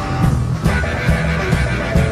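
Rock song from a blues-rock playlist playing with a steady beat, drums and bass under guitar, with a brief hazy high sound in the first half second.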